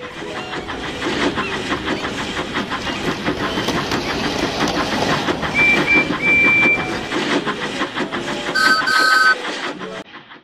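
Steam locomotive chuffing in a quick, even rhythm that grows louder. About halfway through there is a high whistle of two short toots and a long one. Near the end a lower two-note chord whistle sounds twice.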